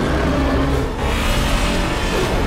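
Loud film sound effects from a giant-monster fight: a dense, rumbling, roar-like din with mechanical noise, starting suddenly just before and holding steady.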